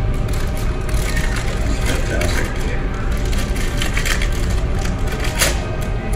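Christmas wrapping paper crinkling and tearing in many short crackles as a wrapped coffee cup is unwrapped by hand, with music playing underneath.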